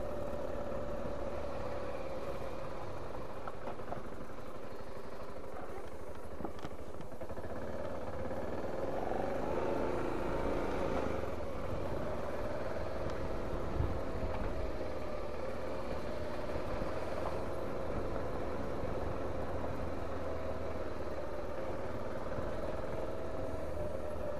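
BMW G 650 GS Sertao's single-cylinder engine running steadily at low speed on a slow ride over a rough gravel track, its pitch wavering slightly, with a single knock partway through.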